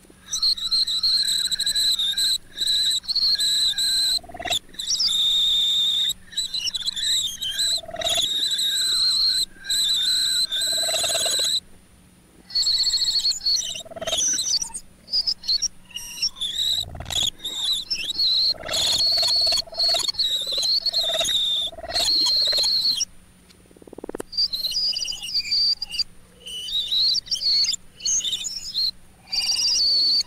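Experimental multitrack tape music built from everyday sounds: a shrill, wavering whistle-like tone, chopped by abrupt cut-offs and restarts, over a steady low hum.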